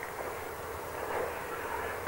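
A pause in speech filled only by the steady background hiss and room noise of an amateur voice recording.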